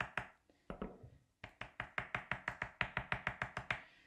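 Skewer tip dabbing food colouring onto paper on a tabletop: a run of light taps, sparse at first, then after a short pause about a second in, quick and even at about eight a second.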